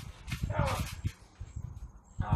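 Bodies repeatedly thudding dully onto a trampoline mat as two people wrestle on it. About half a second in comes a short cry that falls in pitch.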